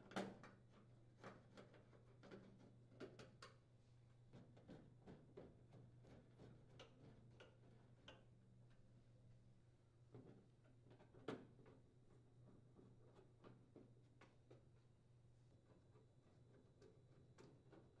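Faint, irregular clicks and ticks of a Phillips screwdriver turning screws into a microwave's sheet-metal cabinet, with a sharper click about a quarter second in and another about 11 seconds in, over a low steady hum.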